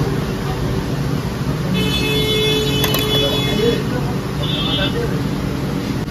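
Busy roadside din of traffic and background voices. A high-pitched vehicle horn sounds for about two seconds about two seconds in, then gives a second short toot.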